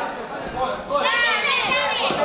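Onlookers' voices shouting over one another, quieter at first, then loud, high-pitched yells from about a second in.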